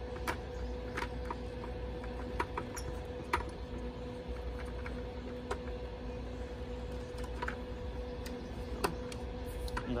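Hard plastic parts of a WaterTech Volt FX-8LI battery pool vacuum being handled and pushed together: scattered light clicks and knocks, a dozen or so, over a steady low hum.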